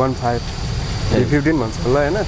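A man talking in short phrases over a steady low rumble.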